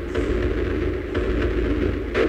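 Loud, low rumbling drone with a few faint clicks over it, part of a dark intro soundtrack.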